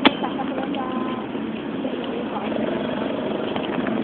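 Steady traffic noise with faint voices in the background. A sharp click right at the start is the loudest sound.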